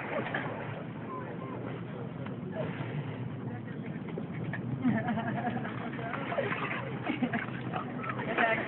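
Two dogs roughhousing, with short dog vocal sounds mostly in the second half, over distant voices and a steady outdoor hiss.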